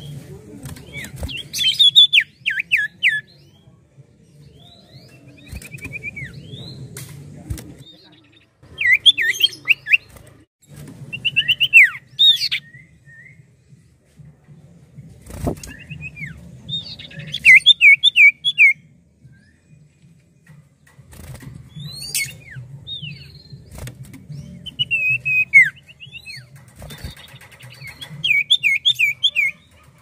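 Common iora (cipoh) singing: about seven short bursts of rapid, down-slurred whistled notes, each burst a second or two long, with pauses of a few seconds between them.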